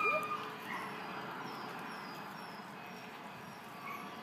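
Steady outdoor background noise, with a short high tone right at the start.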